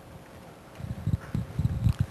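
Several low, dull thumps in quick succession in the second half, loudest near the end.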